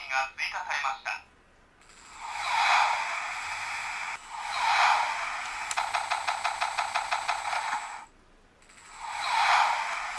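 Tomica Hyper Rescue Drive Head Drive Gear toy playing its electronic sounds through its small speaker. A brief stretch of voice comes first, then rising whooshing effects with a fast, even pulsing in the middle, broken by a short pause near the end.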